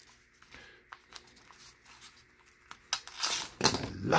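A paper envelope being slit open with a plastic letter opener. Faint scratching and ticking as the opener is worked in gives way, about three seconds in, to two loud bursts of tearing paper as the blade gets through.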